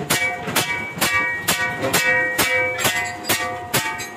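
Hammer blows on a large iron kadai resting on a stone block, about two strikes a second in a steady rhythm. Each blow leaves the pan ringing with clear metallic tones.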